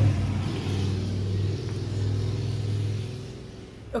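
A deep, steady low rumble from a passing car, fading away about three and a half seconds in.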